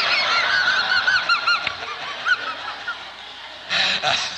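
Audience laughing: a burst of laughter from many people that fades over about two seconds, then swells again near the end.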